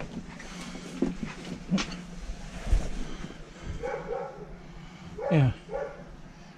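A dog giving two short calls about four seconds in, with a few light knocks before them.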